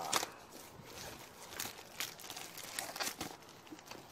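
Plastic wrapping being crinkled and pulled off a parcel by hand, rustling with several sharp crackles.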